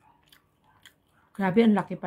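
Faint wet chewing with small mouth clicks as a bite of pizza is eaten, then about a second and a half in a loud, pitched vocal sound from the eater breaks in.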